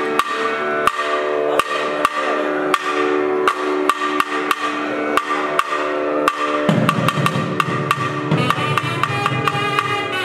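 A nadaswaram and thavil ensemble playing: sharp, cracking thavil drum strokes keep a steady beat, about every two-thirds of a second with lighter strokes between, over the long held notes of the double-reed nadaswaram. A lower, fuller layer joins about seven seconds in.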